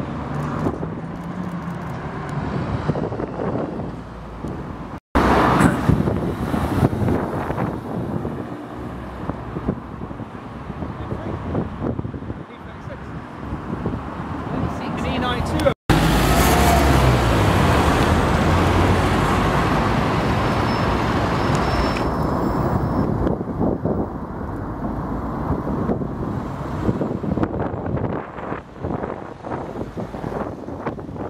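City-centre street traffic: cars, vans and buses driving past and waiting close by, in three clips joined by abrupt cuts about five and sixteen seconds in. The loudest stretch follows the second cut, as a vehicle passes close.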